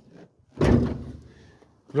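The steel cab door of a 1966 Morris Minor pickup being shut: a single solid thunk about half a second in, dying away quickly.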